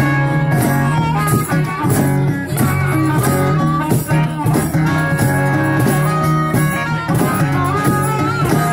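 Live blues band playing an instrumental break: strummed acoustic guitar and electric guitar, with a lead line of held, bending notes from the harmonica.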